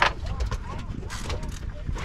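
Wind rumbling on the microphone with faint talk in the background, after a sharp click right at the start.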